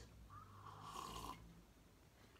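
Near silence, with one faint breathy sound lasting about a second.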